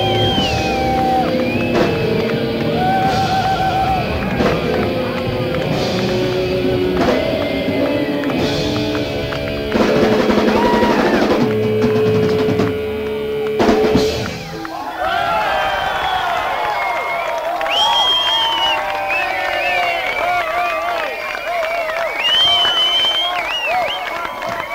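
Progressive rock band playing live, with drums, bass, guitar and keyboards, ending on a loud hit about fourteen seconds in. After it the low end falls away and crowd cheering and whistling follow.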